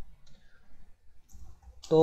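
A few faint clicks of computer keyboard keys as the terminal is cleared. A man's voice starts near the end.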